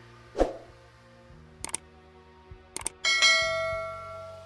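Animated end-screen sound effects over a faint low music bed: a short whoosh, then two quick pairs of sharp clicks like a button being clicked, then a bright bell ding, the loudest sound, that rings out toward the end.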